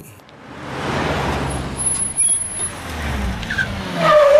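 Cars driving up and pulling in: a steady rush of engine and tyre noise that swells in at the start, with a thin high squeal through the middle.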